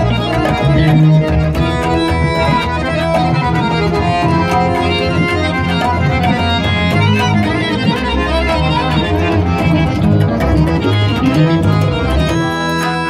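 Harmonium played solo: a quick, continuous melody of changing notes over held low notes.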